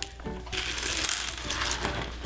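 Dry elbow macaroni pouring from a cardboard box onto slime: a dense run of small hard pieces clicking and rattling as they land and tumble against each other.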